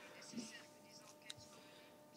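Near silence: faint room tone through the microphone, with a steady faint hum and a small click about a second in.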